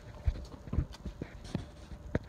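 A few light, irregular knocks about half a second apart: handling noise and footsteps as a handheld camera is carried down under the truck.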